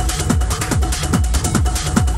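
Electronic dance music in a techno style. A deep kick drum with a falling pitch lands on every beat, a little over twice a second, under fast hi-hats and a steady held synth note.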